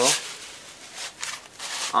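Foam pool noodle rubbing against a taped sword core as it is twisted and pushed on, an irregular scratchy friction noise.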